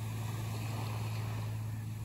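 Small waves lapping and washing up on a sandy beach, over a steady low hum.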